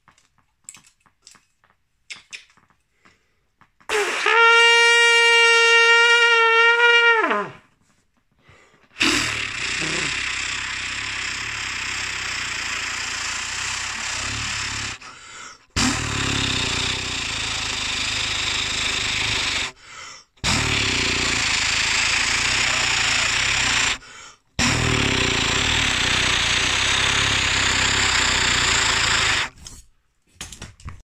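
Trumpet played badly: after about four seconds of near quiet, one held note of about three and a half seconds that sags down in pitch as it ends, then four long, harsh, noisy blasts with short breaks between them, the bell blown close into the microphone.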